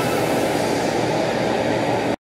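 Steady static-like rushing noise, even and without any tone, from the intro animation's glitch transition sound effect.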